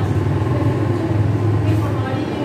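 A steady low mechanical hum, with faint voices over it.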